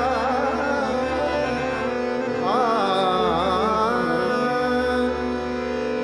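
Male vocalist singing a Marathi natya sangeet song over a steady tanpura drone with held accompanying notes. An ornamented, bending vocal phrase comes about halfway through.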